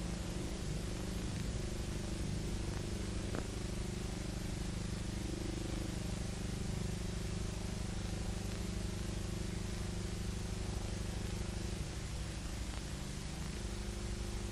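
Steady hiss and low hum of an old film soundtrack, with one faint click about three and a half seconds in.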